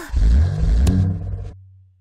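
A low, vehicle-like rumble that is loud for about a second and a half and then fades away, with one short click near the middle.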